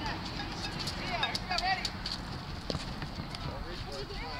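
Background chatter of several people, with voices swelling about a second in and again near the end, and a few sharp clicks.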